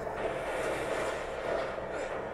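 The episode's soundtrack playing at low level under the reaction: the steady, even rumbling noise of a battle scene, with no distinct strikes or voices.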